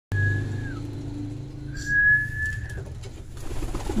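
Pigeons cooing, with two long steady high whistle notes, the first sliding down at its end and the second about a second later.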